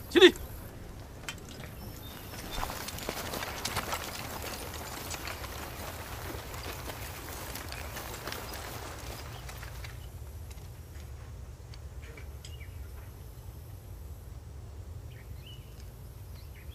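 A short shout right at the start, then the shuffling footsteps and scattered clinks of a large body of soldiers with rifles moving into formation, busiest in the first half and thinning to quieter, sparser footsteps and clicks near the end.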